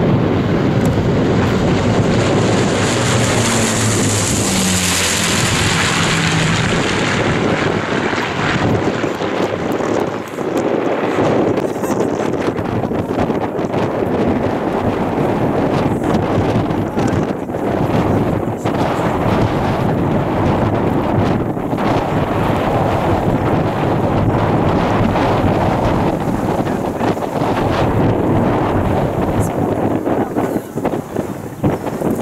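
Avro Lancaster's four Rolls-Royce Merlin V12 engines droning as the bomber flies past overhead. The engine note is clearest in the first several seconds, with steady gusty wind noise on the microphone throughout.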